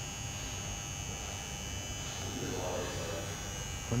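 Steady electrical hum with a thin high whine and hiss, with faint distant voices briefly past the middle.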